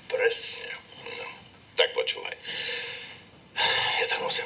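Men's voices speaking indistinctly, with a louder stretch near the end.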